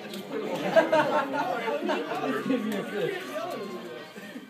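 Several people talking over one another and laughing, loudest about a second in.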